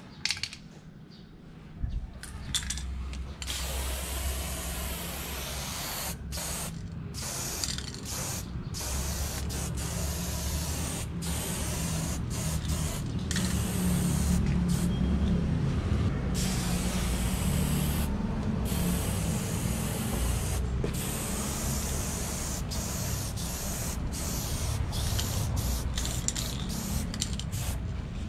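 Aerosol spray paint can hissing as silver paint is sprayed onto a wall, in long passes broken by short pauses, with a steady low rumble underneath.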